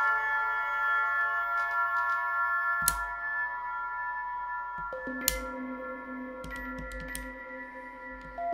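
Critter & Guitari Pocket Piano synthesizer holding a chord of steady electronic tones, with lower notes coming in about five seconds in. Two sharp clicks cut through, near three and near five seconds in.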